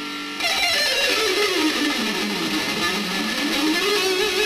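Electric guitar playing a fast picked shred run. A note rings briefly, then about half a second in the rapid picking starts: a repeating six-note sequence that steps down in pitch and then climbs back up.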